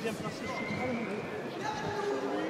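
Voices calling out in French from ringside during a boxing bout, one held shout among them, over arena hubbub with a few faint light knocks.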